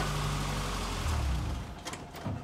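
Car engine idling steadily. The sound drops away sharply about one and a half seconds in.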